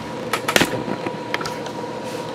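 Handling noise from the camera being moved by hand: a few light clicks and one sharper knock about half a second in. A steady hum runs underneath.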